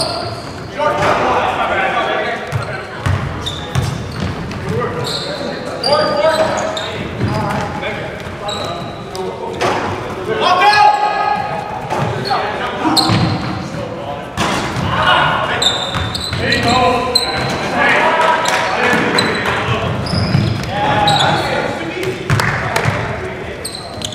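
Basketball game in a large gym: the ball bouncing on the hardwood court and players calling out indistinctly, with a hall echo.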